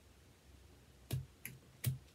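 Scissors snipping yarn: three sharp clicks in the second half, the first and last loudest.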